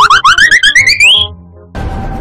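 Cartoon-style comedy sound effect: a fast warbling whistle that climbs steadily in pitch for just over a second and fades. Background music starts up near the end.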